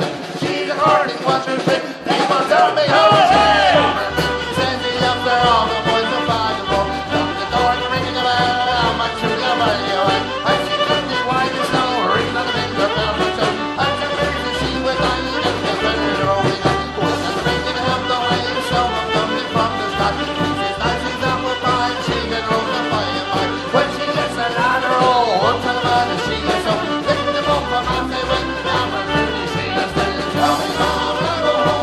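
Live folk band playing an upbeat tune, accordion and fiddle carrying the melody over guitar, bass and drums; the bass line comes in about two and a half seconds in.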